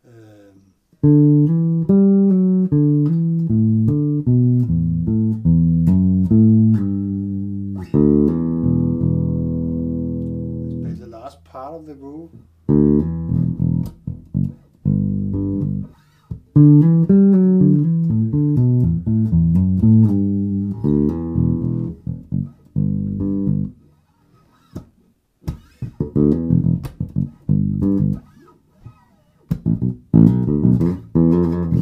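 1978 Music Man StingRay electric bass played through an amp in a funky E-minor groove and fill. It plays a run of quick notes, then a held, ringing passage about eight seconds in and a note sliding in pitch near eleven seconds. The groove picks up again, breaks off briefly around twenty-four seconds, then resumes.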